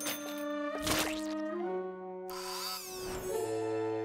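Cartoon background score of long held notes, with a brief click about a second in and a high, shimmering sparkle effect through the second half.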